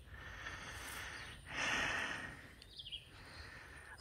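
Quiet outdoor background noise, with a soft rush of noise lasting under a second about halfway through and a faint high chirp, like a bird's, shortly after.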